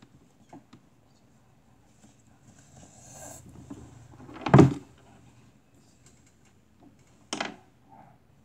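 Handling noise: faint rustling, then one loud short thump a little past halfway and a shorter knock near the end.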